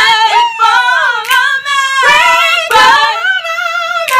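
A single voice singing unaccompanied in a high register, sliding between long held notes with vibrato.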